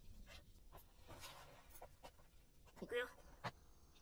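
Near silence: room tone with a few faint small clicks and, about three seconds in, a brief faint voice sound.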